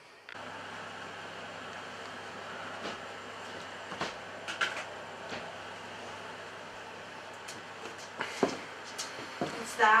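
Quiet indoor room tone: a steady low hum under even background noise, with a few faint scattered clicks and knocks.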